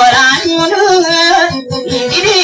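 Maranao dayunday song: a sung melodic line with wavering, ornamented pitch over a quickly plucked acoustic guitar, the singing breaking off briefly near the end.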